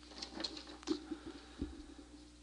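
Faint, irregular scratches and taps of a pen writing on paper, with a soft thump about one and a half seconds in.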